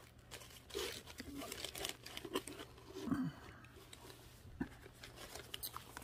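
Plastic zip-top bags and seed packets crinkling and rustling as they are handled, in irregular bursts.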